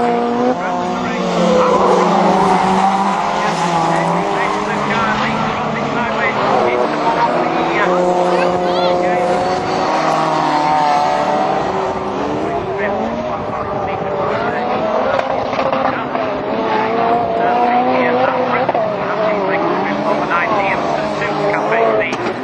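Several rallycross race cars' engines racing around the circuit, their notes overlapping and rising and falling as they rev, change gear and pass.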